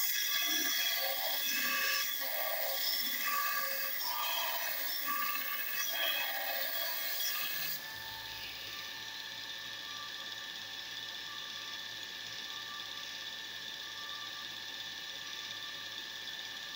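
A metal strip is ground against the abrasive belt of a VFD-driven 2x36 belt grinder, giving a loud hiss of grinding. The hiss stops suddenly about halfway through. After that the grinder's induction motor and belt run steadily on their own with a steady whine.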